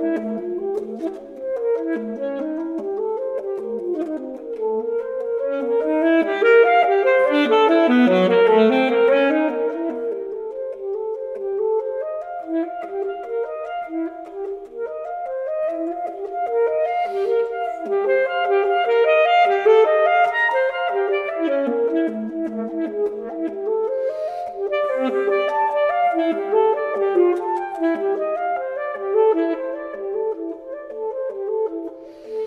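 Solo saxophone playing a fast, unbroken stream of short, detached notes in a concert étude written to imitate the balafon, a West African xylophone. The line swells louder and brighter about six to ten seconds in, again around twenty seconds and near the end.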